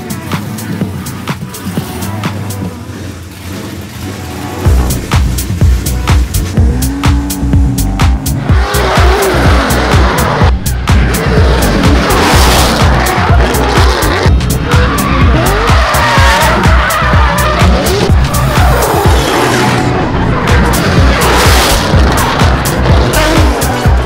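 Electronic dance music with a steady beat, a heavy bass beat kicking in about five seconds in. Over it, drift cars' engines rev and their tyres squeal.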